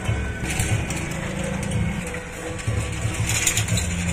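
Small caster wheels and metal frames of wheeled procession banner stands rattling and clattering as they are pushed over the road, with music playing behind.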